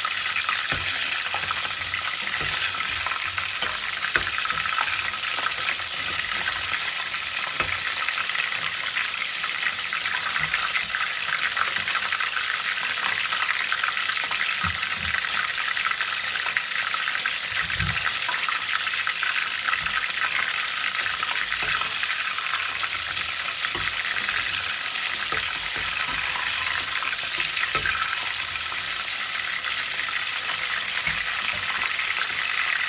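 Battered salt cod (baccalà) deep-frying in a steel pot of hot oil: a steady, dense sizzle and crackle throughout, with a few soft thumps.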